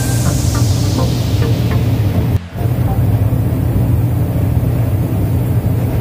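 Spray-booth ventilation running with a steady low hum, cut by a brief dropout about two and a half seconds in.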